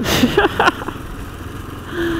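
KTM 690 Enduro's single-cylinder engine running steadily while riding on a dirt road, with wind and road noise.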